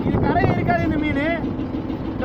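A voice over the steady low rumble of a small fishing boat's engine and wind at sea.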